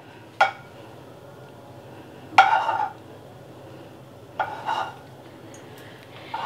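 Slotted metal spatula knocking and scraping against a frying pan: a short click, then two brief scrapes about two seconds apart, over a low steady hum.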